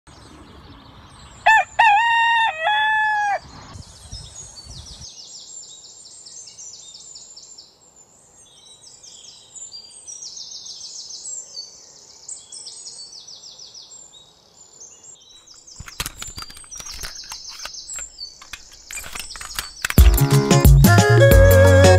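A rooster crowing once, a long call of a few connected phrases lasting about two seconds, then quieter high-pitched chirping of small birds. A run of sharp clicks and knocks comes in the last few seconds.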